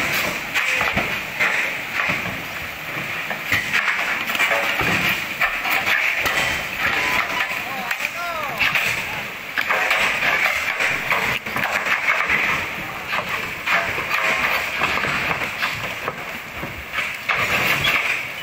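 Several people talking and calling out over a steady rushing of floodwater, with scattered knocks.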